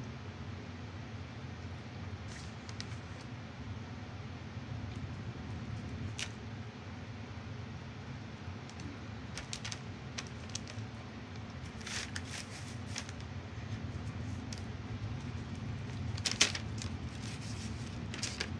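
Hands rolling a clay coil back and forth on a work board: soft rubbing with a few scattered light clicks and taps, the loudest about sixteen seconds in, over a steady low hum.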